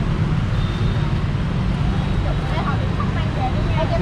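Steady low rumble of street traffic, with faint voices of people nearby in the middle of the stretch.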